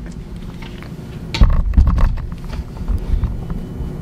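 Handling noise from a camera being moved and repositioned: a few heavy low thumps and knocks about a third of the way in, over a steady low hum.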